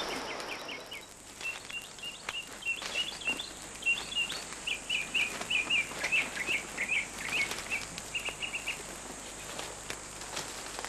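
Birds chirping: a quick run of short, high chirps from about a second in until near the end, over steady background noise.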